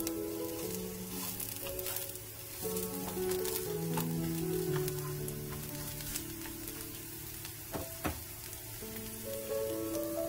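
Shredded radish pancakes sizzling and crackling in oil in a nonstick frying pan, with one sharp click about eight seconds in. Gentle background music with held notes plays over it.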